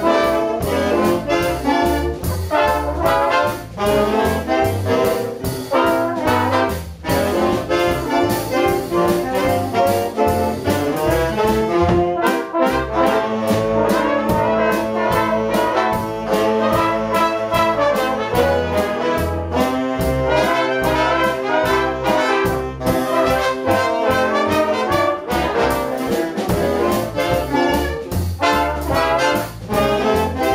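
Jazz big band playing a tune together: saxophones, trumpets and trombones over upright bass and drums. About midway the cymbals drop back for several seconds under longer held horn chords, then the full rhythm section returns.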